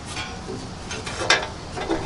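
A few faint, short scrapes and taps of handling at the metal back of a pellet grill's hopper, where the pellet-dump door has just been slid shut. The sharpest sound comes about a second in.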